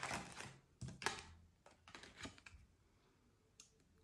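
A deck of tarot cards being shuffled and handled: a few faint, scattered clicks and taps of cards, mostly in the first two and a half seconds.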